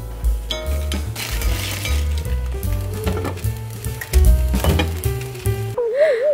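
Frozen vegetables sizzling as they go into hot pans, with light clinks of cookware, under background music with a steady bass line.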